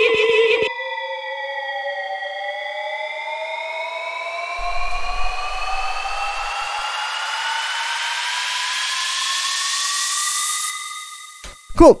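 Tech house build-up risers: an FM synth pitch riser made in Ableton's Operator, two detuned oscillators clashing, dips briefly and then glides steadily upward. Under it a filtered white-noise riser swells brighter and cuts off about a second before the end.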